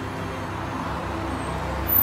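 Road traffic: a car passing close by, its low engine and tyre rumble growing louder toward the end.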